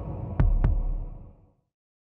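Deep double thump, like a heartbeat, about half a second in, over a low rumble that then fades out.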